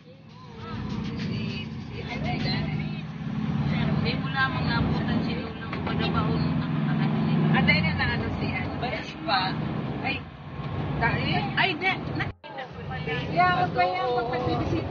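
Engine and road noise inside a moving vehicle's cabin: a steady low drone under passengers' voices. The sound cuts out for an instant near the end.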